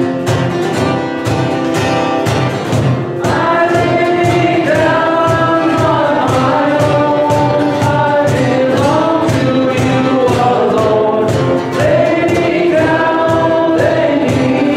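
Contemporary worship band playing a song with a steady beat while many voices sing the melody together.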